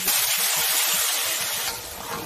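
Boiling water poured into a hot wok of stir-fried beef brisket, hitting the hot metal and oil with a loud hiss of steam that starts suddenly and dies down over about two seconds.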